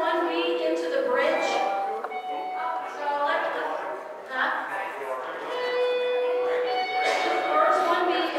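Voices singing a worship song with musical accompaniment, sounding roomy in a large hall, with one long held note a little past the middle.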